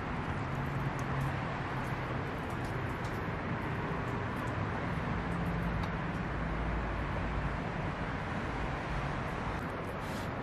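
Steady outdoor background noise with a low hum underneath and no distinct events.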